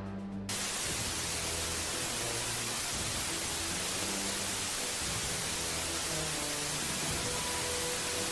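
Television static hiss, a steady rushing noise that cuts in suddenly about half a second in, with quieter music underneath.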